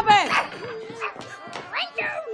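Voices making high, dog-like yelping cries and a drawn-out howl: a falling cry at the start, a held note, then a short rising yelp near the end.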